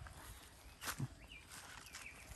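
Faint outdoor field ambience with a couple of soft footsteps about a second in and a few faint, short bird chirps after them.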